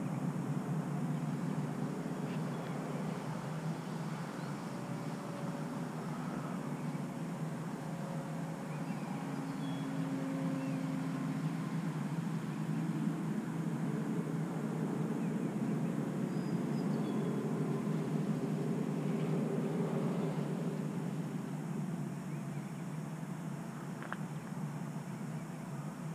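Electric RC model biplane flying, its brushless motor and 13x8 propeller giving a steady drone with a faint tone that drifts in pitch as the plane moves about the sky.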